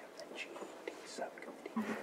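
Faint murmur of low voices with small scattered rustles and clicks.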